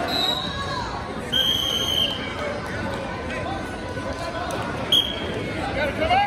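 Indistinct voices of a crowd echoing in a gymnasium, with a high steady whistle blast just over a second in and a short, sharper one near the end.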